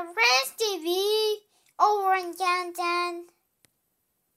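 A child's voice singing wordless, high-pitched notes in two phrases: the first gliding up and down, the second a few short held notes. It stops a little past three seconds in.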